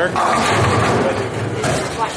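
Low rumble of a bowling ball rolling down a wooden lane, with bowling-alley chatter behind it.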